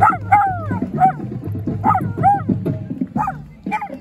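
A small dog barking repeatedly in high-pitched, rising-and-falling barks, about seven in four seconds, over music.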